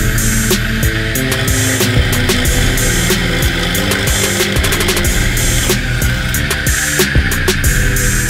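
Background music over the steady high whine of a homemade brushless motor spinning a drill chuck with a 4 mm drill bit.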